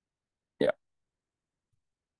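A man's single short, clipped "yeah" about half a second in, the rest dead silence.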